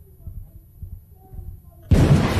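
Muffled, low thudding with only faint higher tones, the dulled hearing of a deafened ear, then just before the end a sudden loud gunshot that rings on.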